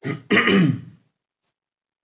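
A man clearing his throat once, a short sound in the first second, then silence.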